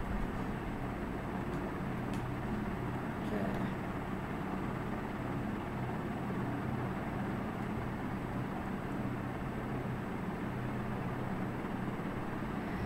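Steady background noise with a low hum, and a few faint clicks.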